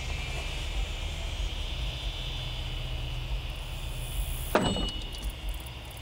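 A steady low hum, then about four and a half seconds in a single sharp impact with a brief metallic ring: a stainless steel throwing star striking the target board. It appears not to stick, since the thrower goes on to say the stars only stick if thrown correctly.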